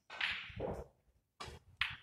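Clothing and a snooker cue brushing past close to the microphone as the player walks by: one long swish in the first second, then two short sharp swishes near the end.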